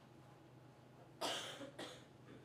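Two coughs in quick succession, starting about a second in, the first the louder, over low hall room tone.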